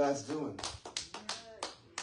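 A voice trails off at the start, followed by a run of irregular light taps, the sharpest one near the end.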